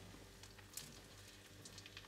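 Near silence: room tone with a steady low hum and a few faint clicks, one a little louder just under a second in.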